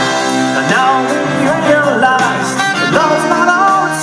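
Live rock band with a horn section playing: drums, electric bass and guitar, Hammond organ keyboard, trumpet and trombone, with a sung melody on top.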